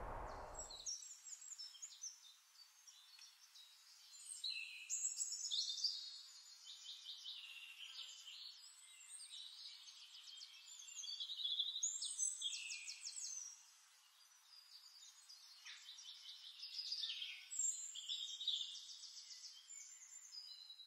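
Birds singing faintly: many short, high-pitched chirping and trilling phrases overlap, with a brief lull about fourteen seconds in.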